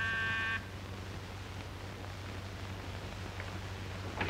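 Electric door buzzer sounding one steady buzz that cuts off about half a second in, signalling a caller at the door. After it, only the low steady hum of the old film soundtrack.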